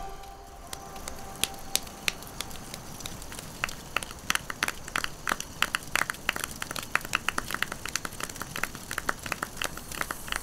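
Wood bonfire crackling and popping, with sharp irregular snaps over a low hiss that come thicker from about halfway through.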